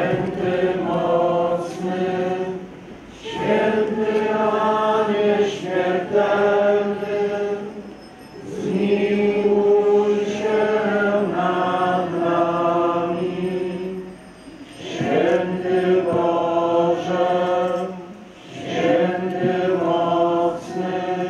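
A crowd of worshippers singing a slow church hymn together, in long held notes. The phrases last a few seconds each, with short breaths between them.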